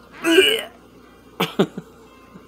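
A man's voice: a short, breathy nonverbal vocal burst about a quarter second in, then a few mumbled syllables about halfway through.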